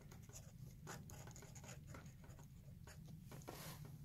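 Faint scratching of a pen tip writing on workbook paper, in a run of short, irregular strokes.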